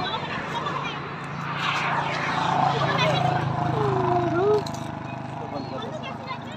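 A steady low engine drone that grows louder, then stops abruptly a little past four and a half seconds in, with faint voices over it.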